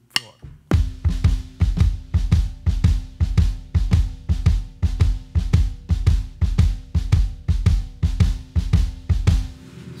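Drum kit: the left-hand stick and the bass drum playing a shuffle rhythm together, a steady uneven long-short pulse that starts about a second in after a spoken count-off and stops just before the end.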